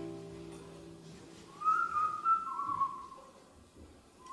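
An acoustic guitar chord rings out and fades, then a short whistled melody enters about a second and a half in, a single wavering line that dies away before the end.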